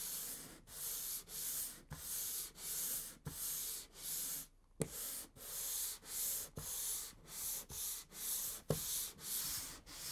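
Sanding block with 220-grit sandpaper rubbed back and forth by hand along the grain of a Douglas fir floorboard, a scratchy stroke about twice a second, with a short pause just before halfway.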